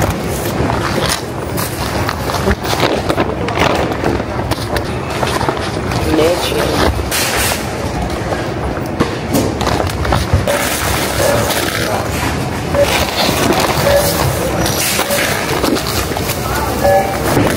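Supermarket checkout sounds: plastic grocery bags and bread packaging rustling and items set down on a counter, full of short clicks and crackles, over store chatter and music.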